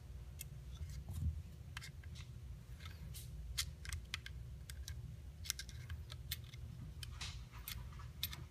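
Scattered light clicks and taps from Ruger American pistol parts being handled and fitted by hand, during work on the takedown lever.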